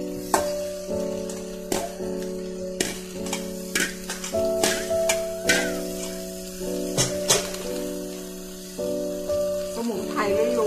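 A metal spatula scraping and knocking against a stainless steel bowl and wok, about eight sharp clacks, as vegetables are tipped into a wok where food is frying with a faint sizzle. Background music with steady held chords plays throughout.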